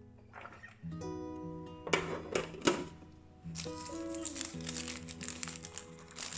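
Background music of held, changing notes, with two sharp knocks about two seconds in and light rustling and clicking over the second half.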